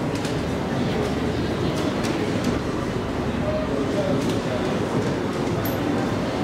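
ITK elevator car running in its shaft: a steady rumble and rattle with a few faint clicks, in an elevator the rider says seems to have some troubles.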